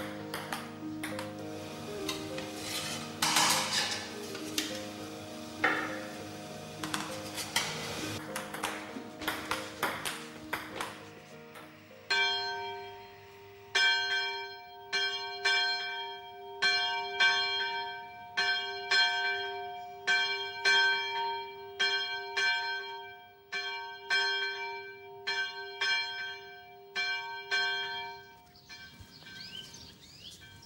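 Metal kitchen bowls and pans clinking over soft held musical notes; then, about twelve seconds in, a single bell starts ringing, struck about every 0.7 s so that it rings on continuously, and stops shortly before the end.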